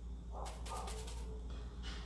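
Stiff-bristle paintbrush dabbing and scrubbing acrylic paint into the cut-outs of a small wooden box: a quick run of faint, scratchy brushing sounds, over a low steady hum.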